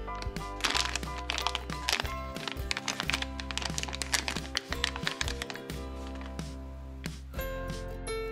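A shiny foil blind-bag pouch crinkling and crackling as hands tear it open, over steady background music.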